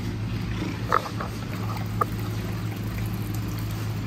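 Steady low hum of running machinery, with two brief higher-pitched squeaks about one and two seconds in.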